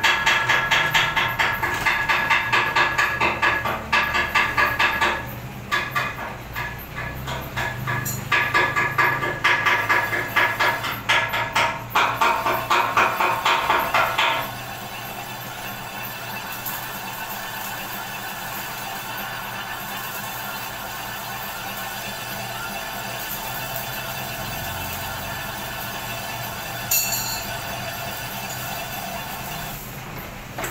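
Metal lathe boring out the bore of an iron idler wheel to take a new bearing, the boring bar cutting as the wheel spins. For about the first half the cut comes as a rapid pulsing, about three beats a second, then settles into a steadier, quieter cutting sound.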